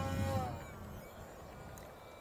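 Distant whine of an RC aerobatic plane's electric outrunner motor and propeller, steady at first, then dropping in pitch and fading out about half a second in. After that only faint wind noise remains.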